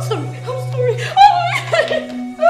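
Short wordless voice sounds, like chuckling, over a steady held low note of background music.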